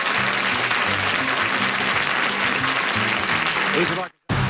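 Studio audience applauding over the show's closing theme music, which plays short, repeated low notes.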